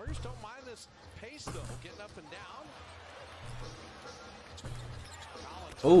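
TV basketball broadcast sound: a basketball dribbled on a hardwood court, giving repeated dull bounces, under a play-by-play commentator's voice.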